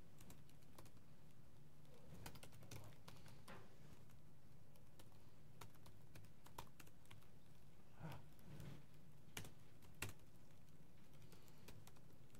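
Laptop keyboard typing: faint, irregular key clicks, the sharpest about ten seconds in, over a steady low hum.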